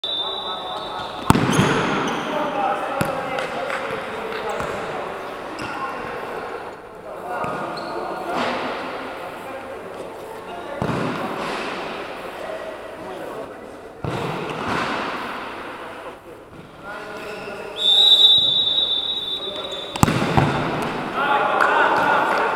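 Sharp, echoing thuds of a futsal ball being kicked and hitting the floor, goal and walls, about half a dozen over the stretch, ringing in a large reverberant sports hall, with indistinct voices in between. A high, steady whistle sounds for about two seconds near the end and is among the loudest sounds.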